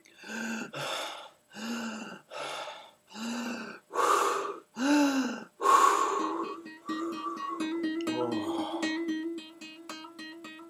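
A string of about seven breathy vocal tones, each a short sighing sound that rises and falls in pitch. About six seconds in, an acoustic guitar starts being plucked in a quick, even repeated pattern.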